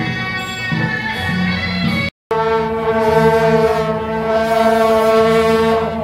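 Procession music, then, after a cut about two seconds in, a group of shaojiao (long brass processional horns) blown in one loud held note that wavers slightly and slides down at the end.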